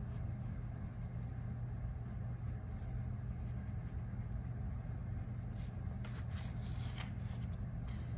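A steady low hum, with faint scratchy strokes of a Crayola felt-tip marker colouring in a paper chart; the strokes come more often near the end.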